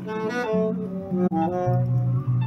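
Saxophone played live, a melody of short changing notes, over a steady low bass line from a backing track played through a small amplifier.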